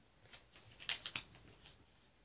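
Pokémon cards and plastic card sleeves being handled: a handful of short light clicks and rustles, the loudest pair about a second in.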